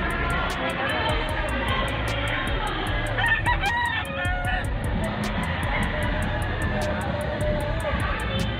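A rooster crowing once, about three seconds in, over a steady background of hall chatter and music.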